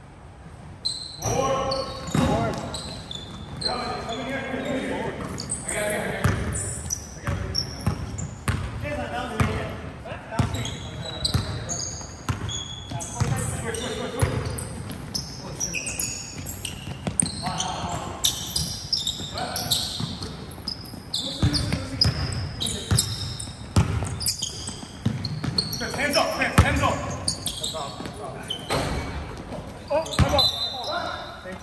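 Basketball bouncing repeatedly on a hardwood gym floor during play, echoing in a large hall, with players' voices calling out over it.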